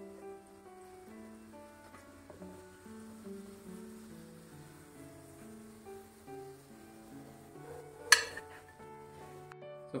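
Quiet background music, a slow melody of held notes, over a faint sizzle of croquettes deep-frying in oil. A single sharp click sounds about eight seconds in.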